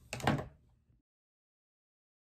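A single short knock about a quarter second in, like an object being handled or set down, followed by dead silence where the audio cuts out.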